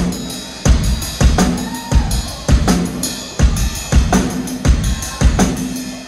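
Live drum kit playing the opening beat of a rock song: heavy kick drum and snare hits spaced a half second to a second apart.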